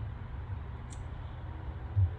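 Steady low rumble of background ambience with a faint hiss, and one short faint high click about a second in.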